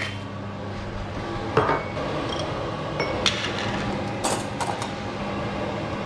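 A few short clinks and knocks of glass jars, bowls and utensils being handled on a kitchen counter while food is prepared, the loudest coming in a cluster past the middle. A steady low hum runs underneath.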